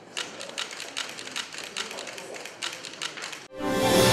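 Rapid, irregular clicking of press photographers' camera shutters. About three and a half seconds in, news theme music starts abruptly.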